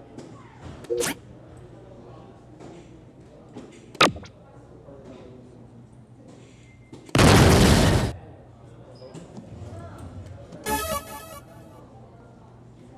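Soft-tip electronic dartboard machine during play: a single sharp click of a dart striking the board about four seconds in, then a loud rushing sound effect from the machine lasting about a second just past the middle, and a shorter electronic chime-like effect near the end, over background chatter.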